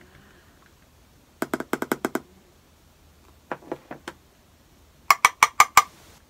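Three quick runs of sharp plastic clicks and taps as a loose-powder container and a makeup brush are handled. The last run is the loudest and the middle one the faintest.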